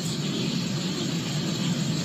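Steady noise inside a car cabin: a low hum under an even hiss.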